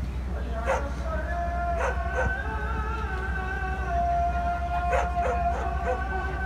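Dogs barking in short sharp calls over long, drawn-out howling.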